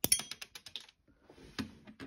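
Small hard-plastic clicks from a LEGO stud shooter on a minifigure-scale E-Web turret as its button is pressed and the piece is handled. A quick run of clicks comes first, then one more about a second and a half in.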